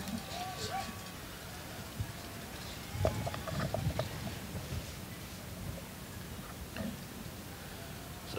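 Faint outdoor football-field ambience with distant, indistinct voices and a steady low hiss. A few light clicks and knocks come around two to four seconds in.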